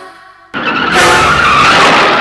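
A loud rushing noise that starts abruptly about half a second in, right after the music drops out, and holds steady to a sudden cut-off.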